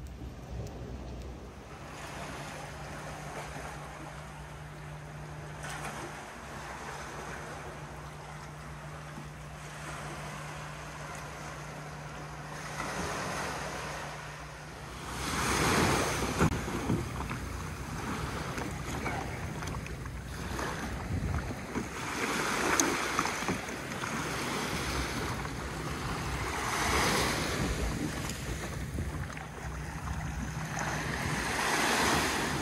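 Small waves washing onto a sandy beach, with wind on the microphone. About halfway through the surf grows louder, coming in uneven surges.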